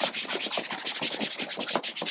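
A whiteboard eraser is scrubbed rapidly back and forth across a whiteboard, wiping off marker writing in a fast, uneven run of rubbing strokes.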